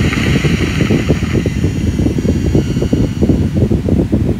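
A loud, steady low rumbling noise with a faint high hiss above it.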